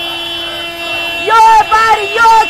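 A car horn held in one long steady tone during a pause in the marchers' chanting, with chanting voices starting again a little past halfway.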